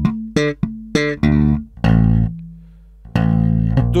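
Electric bass guitar played slap-style: thumb slaps and pops with muted dead notes, on a funk-rock riff in D minor. Several short, clipped notes with sharp attacks come in the first second or so. A longer note follows near two seconds, and after a pause another note is held from about three seconds in.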